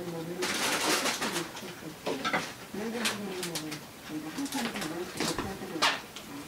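A dove cooing in a run of low, hooting notes that rise and fall. There is a burst of rustling noise near the start and a few sharp clicks.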